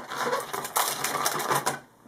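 Dense crackling and rustling of handled plastic, a fast run of small clicks that stops shortly before the end.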